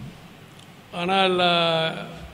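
A man speaking Tamil into microphones: a short pause, then a long drawn-out vowel at a steady pitch about a second in.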